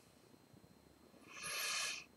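Near silence, then about a second and a half in, one short sniff through the nose, a man smelling the aroma of beer in a glass held at his nose.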